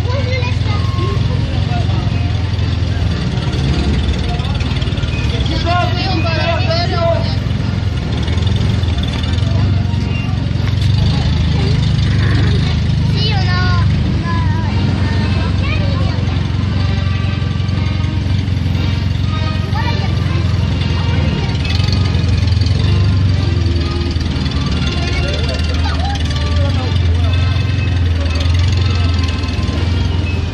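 A slow convoy of WWII-era military vehicles, jeeps and a canvas-topped truck, driving past with their engines running in a steady low drone that stays loud throughout. Voices of people nearby are heard over it.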